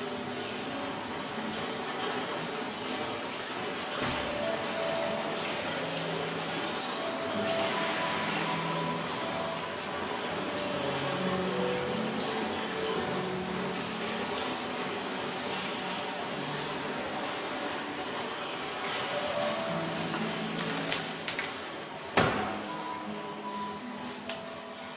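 Steady rush of running water in a jacuzzi pool, with background music playing over it. A single sharp click comes about two seconds before the end.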